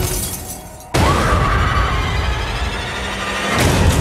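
Glass shattering, with shards scattering, then about a second in a sudden loud impact hit followed by a sustained tone that rises and then holds while slowly fading: horror-trailer sound design.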